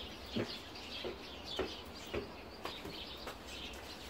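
Small birds chirping faintly, a short falling chirp about every half second.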